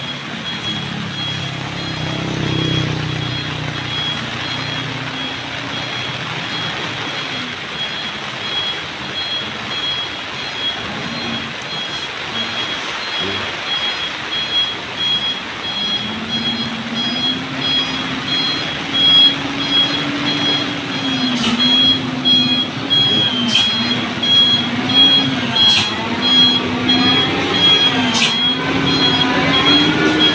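A Mitsubishi Fuso truck's diesel engine labouring on a slippery wet climb, its pitch wavering up and down in the second half. An electronic beeper pulses steadily throughout, and a few sharp clicks come near the end.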